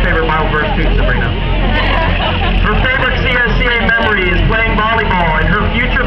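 A man's voice making an announcement over a public-address system, with crowd chatter and a steady low rumble underneath.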